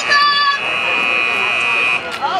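Referee's whistle: one long, steady, shrill blast starting about half a second in and cutting off at the end, blown as the play ends. A shout from the crowd is heard just before it.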